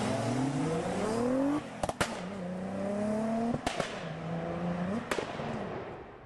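Car engine accelerating hard through the gears: the note climbs, drops at each of two upshifts and climbs again. Sharp cracks come around the shifts and once more near the end, and the sound fades away at the close.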